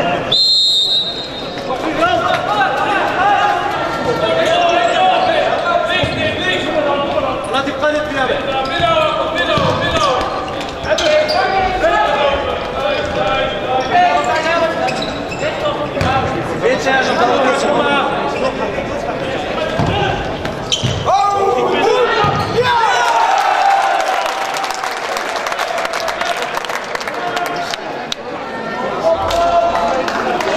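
A futsal ball being kicked and bouncing on a sports-hall floor, with sharp knocks echoing in the large hall. Players' shouts run throughout.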